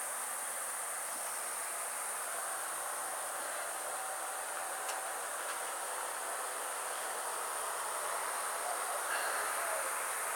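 Insects in the trees making a steady high-pitched buzz, over a constant background hiss.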